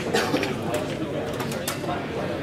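Pool hall background: steady murmur of voices with a few sharp clicks of pool balls striking.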